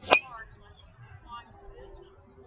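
A 9-degree golf driver striking a teed-up golf ball full swing: one sharp crack near the start, the loudest sound by far.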